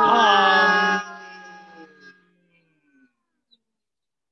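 A man's voice holding one long, steady note: the sustained hum-chant of bhramari (bee breath) pranayama. It is loud for about the first second, then trails away over the next second.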